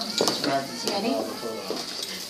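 Indistinct talking and chatter from people in the room, with a couple of short light knocks.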